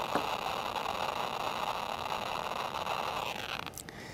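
Geiger counter (TBM-3 survey meter) clicking so fast over a uranium-oxide-glazed Fiesta ware plate that the clicks merge into a dense, steady crackle: a high count rate from the radioactive glaze. The crackle stops suddenly near the end as the counter is moved off the plate.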